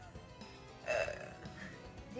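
Soft background music, with one short, throaty vocal burst about a second in.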